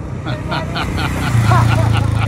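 Motorcycle engine running as the bike rides up, getting clearly louder about halfway through.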